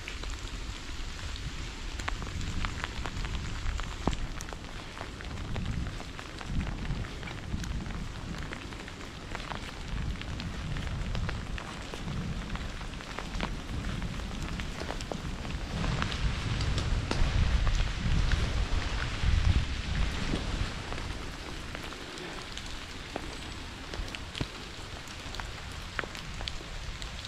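Rain falling, with many sharp drop ticks close to the microphone over a steady hiss. An uneven low rumble runs underneath and swells past the middle.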